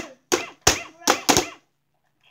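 Plastic mallets hitting the light-up moles of an electronic whack-a-mole toy: about five sharp strikes in quick succession over a second and a half.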